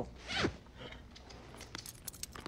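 A short laugh, then faint creaking and small clicks from a horse's saddle and tack as the horse stands with its rider.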